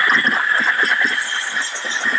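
Steam cleaner's single-hole nozzle blowing a jet of steam, a steady hiss, used like compressed air to blast dirt out of the gap beside a car's centre console.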